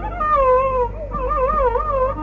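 Carnatic bamboo flute playing an ornamented phrase: a falling slide, then from about a second in a quick up-and-down wavering of pitch, about four shakes a second (gamaka).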